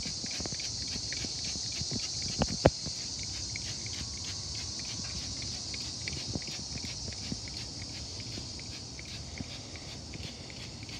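Trigger spray bottle spritzing beef ribs on the grill, with small repeated clicks and two sharp knocks close together about two and a half seconds in. A steady high chirring of insects runs underneath.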